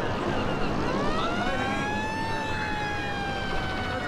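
A siren winding up, its pitch rising for about a second, then holding and slowly sinking.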